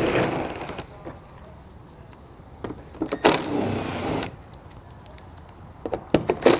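Cordless impact driver with an 8 mm socket running in two bursts of about a second each, backing out the small screws that hold the underbody panel.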